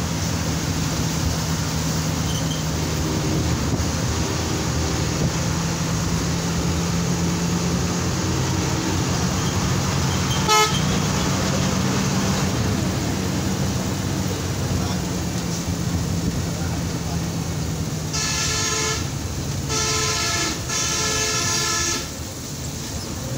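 Coach's diesel engine running steadily at low speed, heard from inside the cab, with a brief horn tap about halfway. Near the end the horn sounds three times in quick succession.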